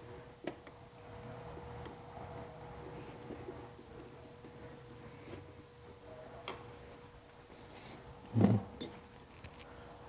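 A screwdriver refitting the screw in a Vespa GTS's plastic horn cover: a few faint clicks and handling sounds over a steady faint hum, with a louder short thud about eight and a half seconds in.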